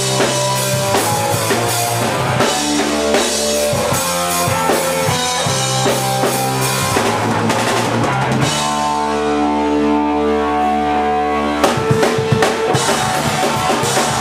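Live rock band playing loud, with guitar, bass and drum kit. About eight and a half seconds in, the drums drop out under a held chord, and they crash back in about three seconds later.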